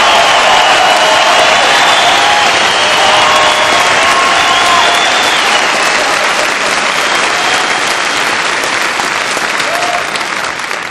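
A large audience applauding loudly, with voices cheering in the first half. The applause slowly dies down toward the end.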